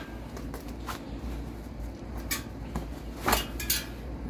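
A rubber bicycle inner tube being pulled out from inside a mountain-bike tyre and off the rim, giving a few short rubbing and scuffing sounds, the loudest two near the end.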